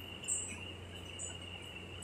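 Quiet room tone: a steady high-pitched whine and a low hum, with a couple of faint soft ticks.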